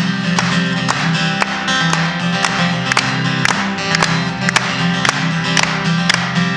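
Solo acoustic guitar played live, a steady run of picked and strummed notes over ringing bass strings, with no singing.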